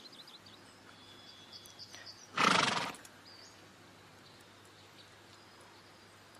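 A horse whinnies once, briefly, about two and a half seconds in.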